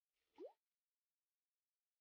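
A single short 'bloop' pop sound effect whose pitch rises quickly, about half a second in.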